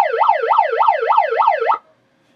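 Electronic siren sound effect, a fast up-and-down yelp about three times a second, sounded for a case hit pulled in a card break; it cuts off suddenly a little before the end.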